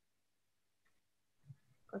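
Near silence: a pause in a video call, with a voice starting to speak at the very end.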